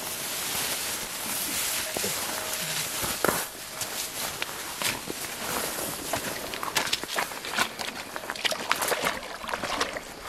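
Leaves rustling and twigs snapping as a man pushes through dense brush, then footsteps on stones at the water's edge, over the steady rush of a shallow river; many short sharp snaps and clicks, most of them in the second half.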